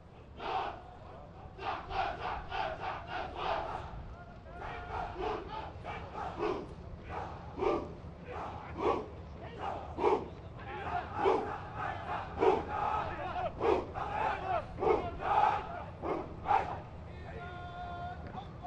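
A formation of police commandos chanting in unison as they jog, a rapid run of short, loud shouts of many voices together.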